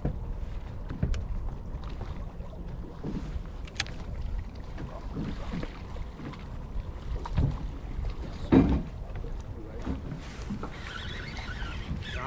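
Wind rumbling on the microphone aboard an anchored small boat on open water, with scattered light knocks and a louder thump about eight and a half seconds in.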